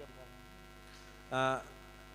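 Steady electrical mains hum on the microphone and sound system. About one and a half seconds in comes a single short voiced sound from a person, like a brief 'mm'.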